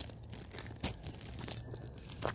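Footsteps on gritty, cracked asphalt: a few soft, irregular scuffs and crunches.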